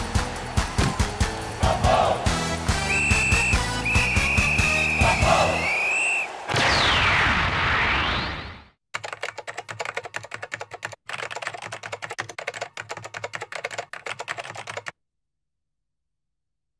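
Cartoon opening theme music with a beat, which gives way about six seconds in to a swelling whoosh. After that comes a rapid run of typewriter-like clicking that lasts about six seconds.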